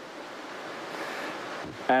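A soft, even rushing outdoor noise that swells a little toward the middle and eases again near the end.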